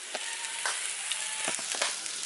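Sausage with kale and baby spinach sizzling in a frying pan, a steady hiss with a few sharp pops.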